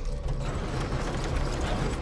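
Film soundtrack sound effects: a steady, dense rumbling noise with no clear tone or beat.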